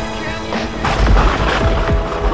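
Electronic bass music, a future bass/dubstep remix: heavy deep bass hits with short, noisy percussive bursts about half a second apart, and a held synth note coming in near the end.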